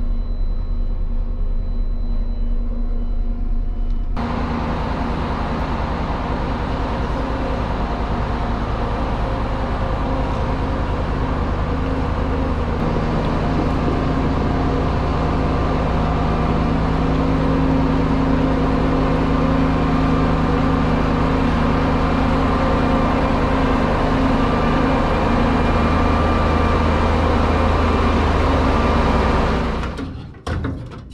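Claas Lexion 760 combine harvester's diesel engine running steadily while the combine drives into a shed. It sounds duller for the first four seconds, then louder and brighter, a deeper steady hum joins about halfway, and it drops away right at the end.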